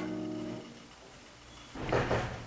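Grand piano's final chord held and dying away over about the first half second, leaving a quiet room. Near the end a louder, noisy burst of sound begins.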